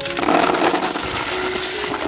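Small freshwater snails poured out of a metal bucket into a plastic tub, their shells clattering and rattling against the metal and plastic in a dense stream for about two seconds, stopping suddenly at the end.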